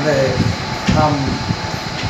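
A man speaking in short phrases over a steady background hum of room noise.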